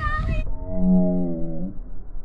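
Children's high shouts that cut off suddenly, followed by one low, steady, pitched tone held for about a second and dipping slightly as it ends.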